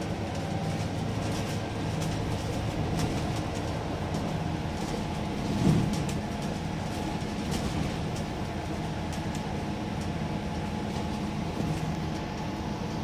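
Interior running noise on the upper deck of a double-decker bus under way: a steady engine and drivetrain hum with light rattles from the cabin fittings. A short low thump comes about halfway through.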